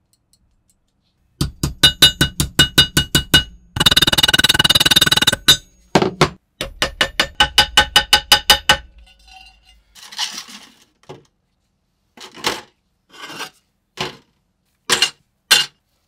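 A steel hammer tapping a rusted sheet-steel scale part against a steel bench, in fast runs of about six blows a second that ring metallically, with one continuous rapid flurry in the middle. Later come a few scattered, duller knocks and clinks.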